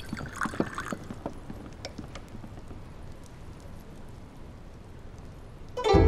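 Scattered light clicks and knocks that thin out after the first couple of seconds, then music starts loudly near the end.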